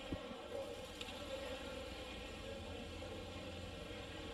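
Faint, steady sound of a small car engine running at low revs, with a short knock just after the start.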